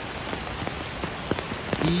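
Rain falling on leaves: a steady hiss with scattered, irregular sharp ticks of individual drops striking close by.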